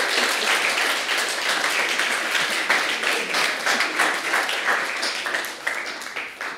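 Studio audience applauding, many hands clapping at once, the applause thinning out near the end.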